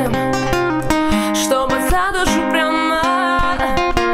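Acoustic guitar played fingerstyle, with a woman singing over it; her held notes have vibrato, in the middle and near the end.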